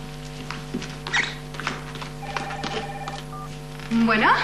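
A telephone rings once, a short trilling ring a little past two seconds in, over soft steady background music, with a soft thump about a second in.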